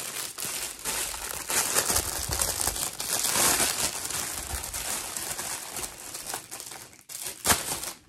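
Clear plastic packaging bag crinkling as it is handled and opened to get at an artificial greenery stem, loudest a few seconds in, with a sharp crackle near the end.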